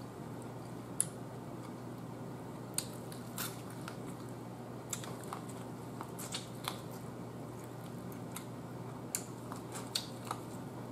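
Biting into corn on the cob close to the microphone, the kernels crunching in scattered sharp crackles and clicks over a steady low hum.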